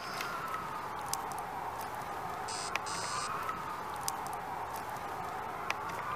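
A siren wailing, its single tone slowly rising and falling in pitch about every two seconds, with faint scattered clicks and two short high buzzes about halfway through.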